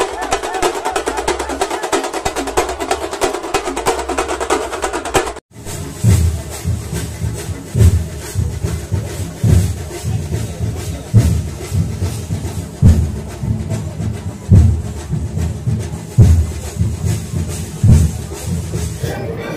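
A street drum troupe plays fast, dense drumming, their drums struck with sticks. About five and a half seconds in it cuts off abruptly. A pounding beat follows, with a heavy bass hit roughly every 1.7 seconds and quicker percussion between the hits.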